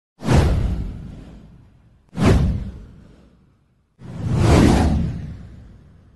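Three whoosh sound effects for an animated title intro. The first two hit suddenly about two seconds apart and fade away; the third swells in and then fades out.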